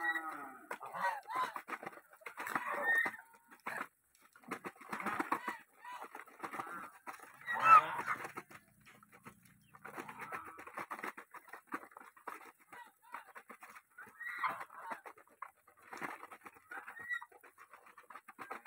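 A flock of domestic geese feeding from a bowl of grain: quick pecking and bill clicks at the grain, with soft short calls, coming in bursts. The loudest moment is one sharper call about eight seconds in.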